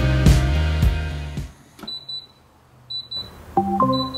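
Background music fades out in the first second and a half; then a gas hob's timer beeps in groups of quick high pips, about once a second, signalling that the countdown has run out. Near the end a short chime of several tones sounds from an Amazon Echo speaker as it starts an announcement.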